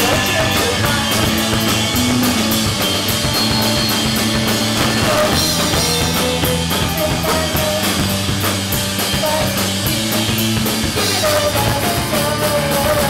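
Live rock band playing: a drum kit keeps a steady, fast cymbal beat under electric guitar and bass, with a singer's voice at times.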